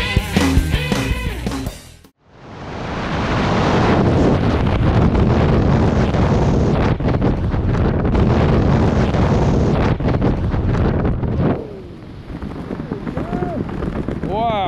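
Music fades out, then loud freefall wind blasts over the skydiver's camera microphone. About eleven and a half seconds in the noise drops sharply as the parachute opens and slows the fall, leaving softer wind under the canopy.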